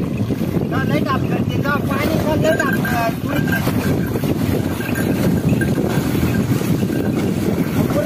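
Water sloshing and splashing around the legs of a pair of bullocks as they wade through shallow water pulling a cart, under steady wind rumble on the microphone.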